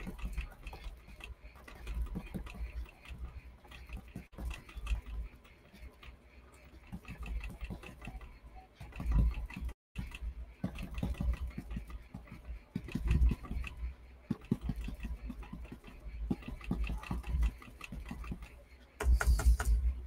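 A paintbrush dabbing acrylic paint onto a canvas on a wooden easel: irregular soft taps and dull thumps.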